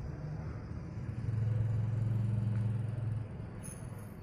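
A low engine rumble, as from a passing motor vehicle, comes up about a second in, holds steady for about two seconds and drops away before the end, over steady street background noise.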